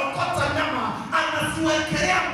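A man's voice amplified through a handheld microphone and loudspeakers.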